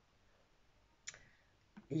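A single short, sharp click about halfway through as an oracle card is laid down on a hard, glossy tabletop; otherwise very quiet.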